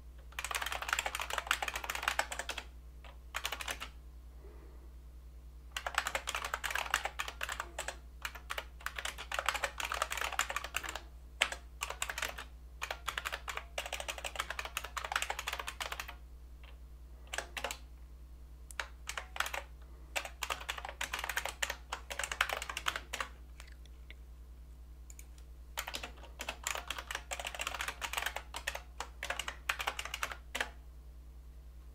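Typing on a computer keyboard in quick runs of keystrokes broken by short pauses, over a steady low hum.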